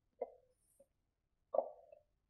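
Two small magnets clacking onto a whiteboard, one after the other about a second and a half apart. Each is a short dull knock with a brief tail. The magnets hold a paper sheet to the board.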